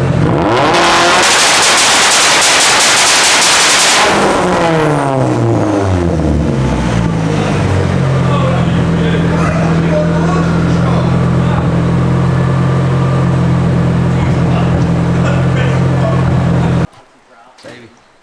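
Turbocharged Honda K24 four-cylinder in a Nissan Silvia S15 on a dyno, run flat out at high revs for about three seconds. Then the revs fall away over a few seconds, and it settles to a steady idle until the sound cuts off abruptly near the end.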